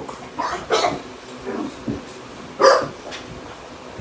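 American Bulldog giving a few short barks while playing, the loudest about two and a half seconds in.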